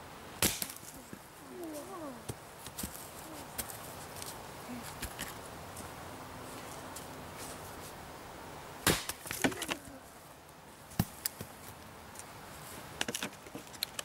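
Axe blows splitting a dry spruce log into quarters: a sharp chop about half a second in and a louder one about nine seconds in, followed by a few lighter knocks.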